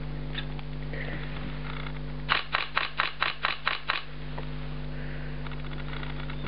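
Sony Alpha A700 DSLR firing a burst in high continuous drive: a rapid run of about nine mirror-and-shutter clicks over nearly two seconds, about five frames a second, starting a little over two seconds in.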